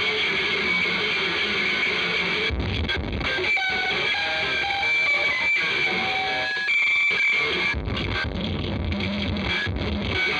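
Customized Fender Jaguar electric guitar amplified through its fitted contact mic: the unclipped string ends and strings are plucked and scraped, giving a dense, clanky metallic racket with short ringing high notes scattered through it.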